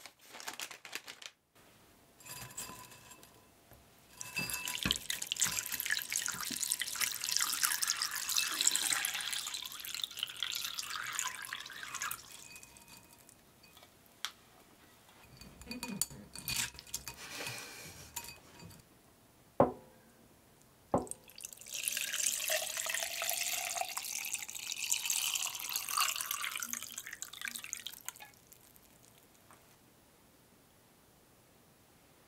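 Water in a glass bowl running and splashing in two long stretches as dried glass noodles (dangmyeon) are put in to soak, with lighter handling sounds between them and two sharp knocks a little past the middle.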